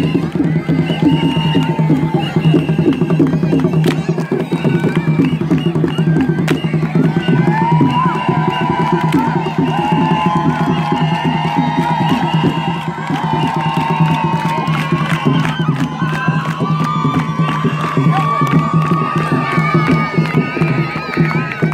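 Fast rhythmic percussion music accompanying the dance, with a crowd cheering. From about eight seconds in, high wavering held calls rise over the rhythm.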